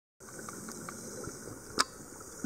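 Underwater ambience picked up by a camera in its housing: a faint steady hiss with a few scattered small ticks, and one sharp click shortly before the end.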